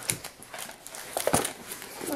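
Handling of crafting packaging: plastic-wrapped sticker packs rustling and a cardboard lunch-box case clicking and knocking as it is closed, with a sharper clatter about a second and a half in.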